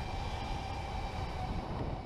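Electric go-kart running at speed: a steady whine from the electric drive motor over a rumble of tyres and chassis on the track.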